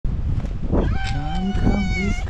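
Fluffy tabby cat giving one long meow that starts about a second in and rises slightly in pitch before holding steady, over a low rumbling background.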